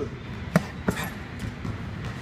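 Two gloved punches landing on a TITLE heavy bag, a quick one-two about a third of a second apart, about half a second in.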